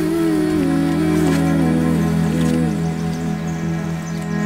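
Background music: a slow, gentle melody moving in small steps over held low tones.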